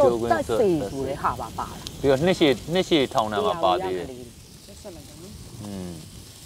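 People talking over a meal, the talk dropping off about two-thirds of the way in, with a faint sizzle from food cooking on a charcoal tabletop grill pan.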